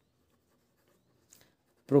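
Faint scratching of a pen writing on paper, a word being written out in longhand.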